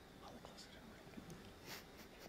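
Near silence: quiet hall room tone with a faint, barely audible murmured voice.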